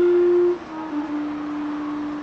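Clarinet and saxophone duet at a pause in the melody: a long held note ends about half a second in, then a softer, slightly lower note is held on.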